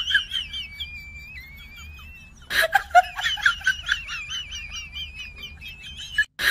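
A bird chirping in quick, high repeated notes, with a long thin whistled note in the first half. About two and a half seconds in, a sharp click is followed by a faster run of chirps, several a second.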